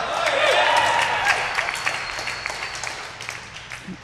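Audience laughing and clapping, swelling just before and gradually dying away.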